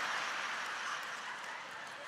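A theatre audience laughing at a punchline, the laughter slowly dying down.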